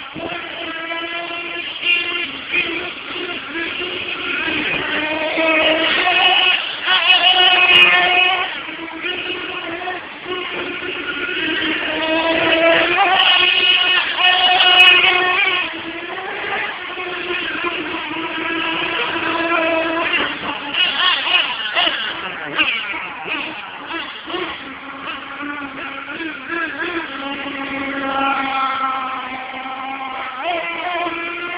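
1/8-scale RC late model race cars running laps on a dirt oval, their motors' pitch rising and falling again and again as they speed down the straights and back off for the turns.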